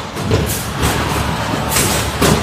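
Combat robots running in the arena: a steady motor drone with three sharp noises cutting in over it.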